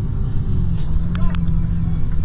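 Steady low rumble of a road vehicle driving across a bridge, heard from inside: engine, tyre and wind noise. Two light clicks come just over a second in.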